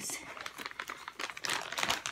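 Clear plastic packaging crinkling as it is handled and opened, a rapid run of small crackles.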